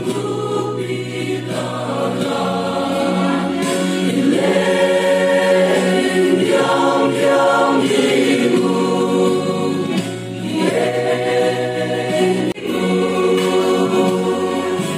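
Mixed choir of male and female voices singing a Christian song in harmony, with sustained chords.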